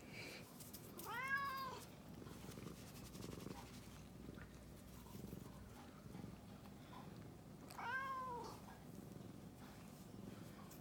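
A domestic cat meows twice, once about a second in and again about eight seconds in, each a short call that rises and falls in pitch, with a steady low purr underneath.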